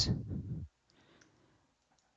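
Computer keyboard typing: a few faint, soft key clicks with short gaps between them.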